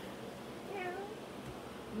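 A single short, faint meow about a second in.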